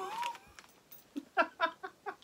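A woman's short, high squeaky whimper just after a cough, then a few short gasping laughs and a breathy exhale near the end: a reaction to the burning heat of a very spicy snack.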